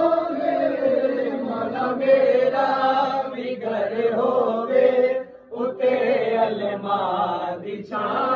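Men's voices chanting a Shia devotional recitation in long, drawn-out melodic lines, with a short break about five and a half seconds in.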